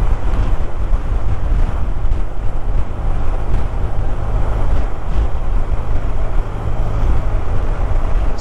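Steady low rumble of a car driving along a road, with wind buffeting the microphone.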